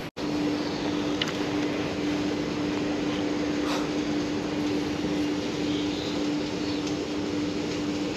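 A steady, unbroken hum at one constant pitch over an even rushing background noise, starting just after a brief dropout at the cut.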